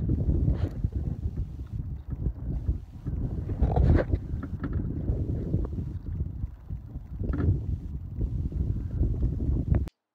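Low, fluctuating rumble of wind and road noise inside a car, with wind buffeting the microphone and a few brief rustles. It cuts off suddenly near the end.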